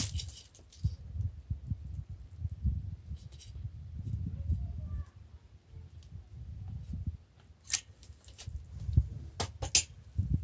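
A manual caulking gun being squeezed to dispense construction adhesive, with a low, uneven rumble throughout. A handful of sharp clicks from the gun's trigger and plunger rod come in the last two seconds or so.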